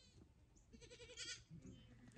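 Near silence, with a faint, wavering animal call from about a second in, lasting about half a second.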